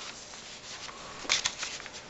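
Paper rustling as a page of a pressed-plant album is handled and turned, with a short rustle about one and a half seconds in.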